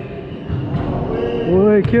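A basketball shot drops through the hoop and hits the court floor near the end, in a large echoing indoor court. A man calls out just before the bounce.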